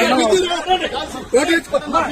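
Crowd voices: several people talking loudly over one another.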